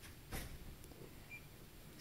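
Quiet room tone with a single short click about a third of a second in.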